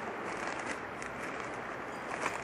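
Soft, steady rustling of a plastic zip-lock bag being handled and pulled open by hand, with a few faint ticks.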